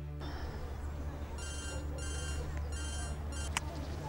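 Mobile phone ringing: three short bursts of ringtone about a second and a half in, over a steady low music bed, with a sharp click near the end.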